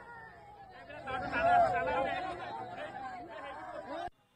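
Several people's voices at once, grieving relatives talking and crying over one another, louder from about a second in.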